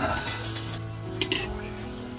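A utensil clinking against a stainless steel wok as the simmering soup is stirred: a handful of sharp clinks in the first second and a half. Background music with steady held notes plays underneath.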